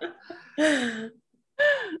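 A woman's breathy laughter: a drawn-out laughing sigh falling in pitch about half a second in, then a short laugh near the end.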